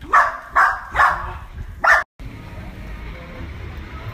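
A dog barking four times in quick succession, the loudest sound here. After a sudden cut, steady low background noise follows.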